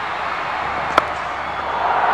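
A single sharp crack of a cricket bat striking the ball about a second in, a lofted shot hit for six, over a steady background hiss.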